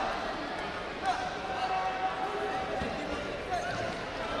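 Background sound of a large indoor sports hall: distant voices and a few dull thuds echoing, the clearest about a second in.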